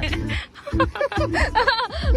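People laughing and chuckling together in short, choppy bursts, with background music.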